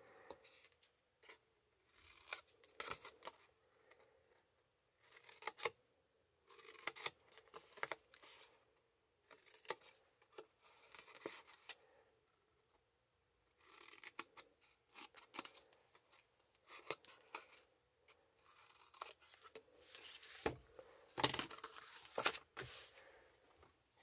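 Small scissors snipping through black cardstock in short, separate cuts with pauses between, trimming the scored flaps off the ends of a box tray. The cuts come louder and closer together near the end.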